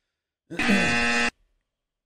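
A short, steady horn-like tone, under a second long, starting about half a second in and cutting off abruptly.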